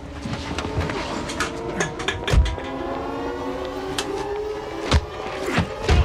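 Blows and body impacts from a fistfight, a few separate hits with the heaviest about two and a half seconds in. They sound over background music holding long sustained tones.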